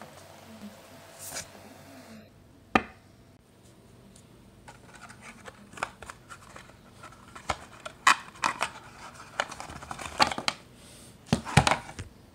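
Trading cards and a cardboard deck box being handled: irregular sharp taps, clicks and papery scrapes of card stock and box flaps, with one sharp snap about three seconds in and a busier run of taps in the second half.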